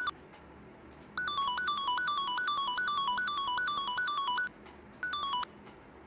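A bright, buzzy synth melody in quick repeated notes, played back from a beat pattern in FL Studio and stopped and restarted. It breaks off at the very start, plays again from about a second in until about four and a half seconds, then sounds once more for half a second.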